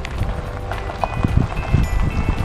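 Toyota Land Cruiser Prado towing a two-horse float, rolling slowly past at low speed: an uneven low engine and tyre rumble.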